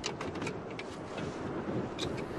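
Wind on a high mountain, buffeting the microphone as a steady rushing noise, with a few short clicks near the start and around a second in.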